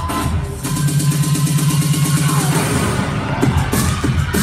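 Loud up-tempo electronic dance music. A fast-pulsing bass line runs from about half a second in until nearly three seconds in, then the pattern breaks and changes.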